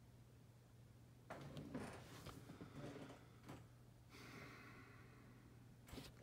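Near silence: a person's faint breaths and soft rustles over a low steady hum, with a faint hiss in the second half.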